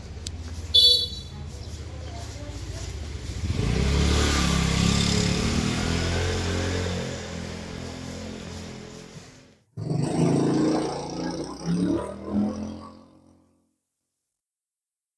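A motorbike engine running close by, swelling a few seconds in and then fading away, with a short horn beep about a second in. The sound cuts off abruptly near the ten-second mark. A shorter stretch of uneven engine-like noise follows and dies out before the end.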